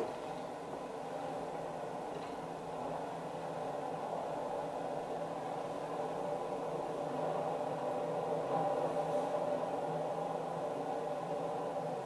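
A steady machine-like hum made of several held tones over a faint hiss, swelling slightly through the middle.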